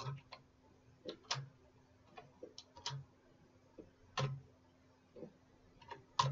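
Computer keyboard being typed slowly: faint, single keystroke clicks at uneven gaps, sometimes two or three close together.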